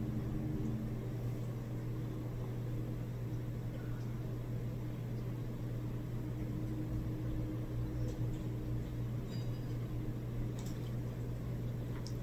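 Room tone: a steady low hum, with a couple of faint soft clicks late on.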